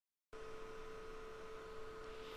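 Dead silence, then about a third of a second in, a faint steady electrical hum and hiss with a thin constant tone comes in: the noise floor of a voice recording.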